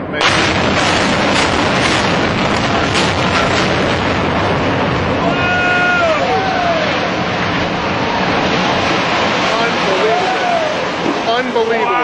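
Building implosion: demolition charges go off in a quick series just after the start, and then the high-rise collapses with a continuous loud rumble. A voice gives rising-and-falling whooping cries over the rumble twice, midway and near the end.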